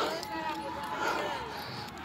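Faint voices in the background, much quieter than the rider's own speech, over low street noise.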